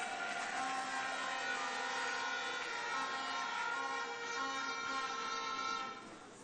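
Horns blown together by the audience: a dense chord of many held tones that builds up just before and stops near the end.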